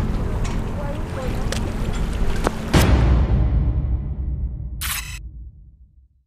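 Low wind rumble on the microphone at an open waterfront. About three seconds in comes a sharp hit with a deep boom that fades out over the next few seconds, the impact of a logo sting, with a brief hiss near the end.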